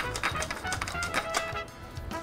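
Pepper mill being twisted, grinding black peppercorns with a run of quick, dry clicks that thins out shortly before the end, over background music.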